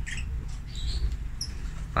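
A few short, high squeaks from peach-faced lovebirds, near the start and again about one and a half seconds in, over a low rumble.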